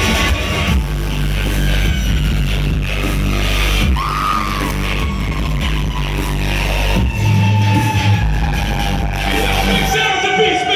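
Loud live electronic dance music with a heavy, steady bass beat and a violin played over it; a long held note slides slowly down in pitch through the second half.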